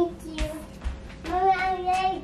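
A young child's voice: a short spoken word at the start, then a note sung and held at one steady pitch for under a second near the end. A brief sharp click or rustle about half a second in.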